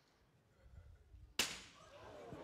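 A swinging pendulum bob smashes into a glass plate about one and a half seconds in. It makes one sharp crash of breaking glass with a short ringing tail. The bob was given a small push at release, so it came back higher than its starting point.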